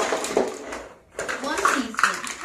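Cardboard cornstarch box being worked open at the top, a rough crackling rasp lasting about a second. A person's voice follows briefly.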